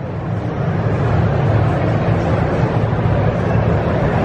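Steady background noise of a large, busy exhibit hall: a continuous low hum with a faint crowd murmur over it.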